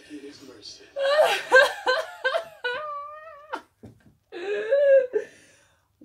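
A woman laughing loudly and high-pitched, in a long bout starting about a second in and a shorter one near the end.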